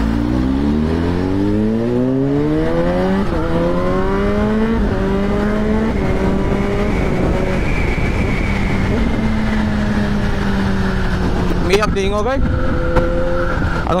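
Kawasaki Z H2's supercharged inline-four accelerating hard through the gears. The pitch climbs steeply and drops at upshifts about three and five seconds in, then settles to a steady cruising note.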